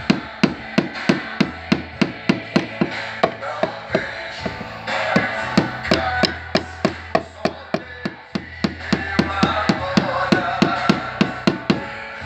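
Quick, even metal taps of paintless dent repair tapping down high spots on a car body panel, about four a second, over background music.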